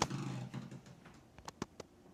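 A pull-out fishing rod closet moving on its drawer slides: a sharp click, then a short rolling rumble, then a few light clicks and knocks near the end.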